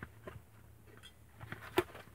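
Handling noise from a cardboard lamp box: a few light knocks and scrapes, with one sharper knock near the end.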